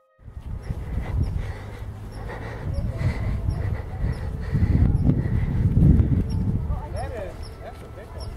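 Low rumble of wind and handling noise on a handheld camera microphone, strongest in the middle of the stretch, with faint voices of people.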